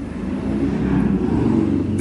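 A steady low rumbling noise, louder than the speech around it, with most of its weight in the bass and no clear pitch.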